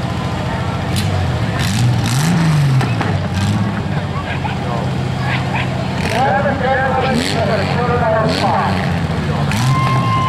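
Demolition derby car engines idling, one revving up and back down about two seconds in, with people's voices over them.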